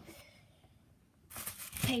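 Packing tissue paper rustling and crinkling as a hand lifts it out of a box, in a short burst that starts about a second and a half in.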